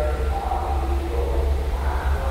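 Wind buffeting the phone's microphone out on deck, a steady low rumble.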